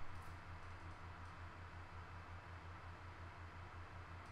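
Quiet room tone: a low, evenly pulsing hum under a steady hiss, with a faint click shortly after the start and another about a second in.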